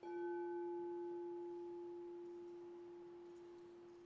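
Singing bowl struck once with a mallet, ringing with one clear tone and a few fainter higher overtones. The higher overtones die away within about a second and a half, while the main tone fades slowly.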